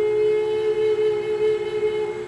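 Native American flute holding one long, steady note, with a second, lower tone sounding steadily beneath it.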